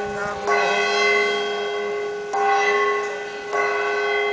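Curved brass horn blown in one long, continuous held tone. Its timbre shifts to a new note about half a second in, again past two seconds and once more near the end.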